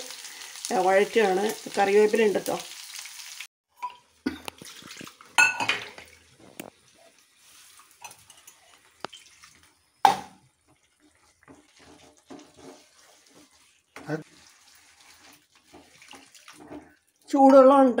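Chicken frying in oil in a nonstick pan: a steady sizzle with speech over it, cut off suddenly about three and a half seconds in. Then only scattered faint clicks and knocks, one sharp louder knock about ten seconds in, and speech again near the end.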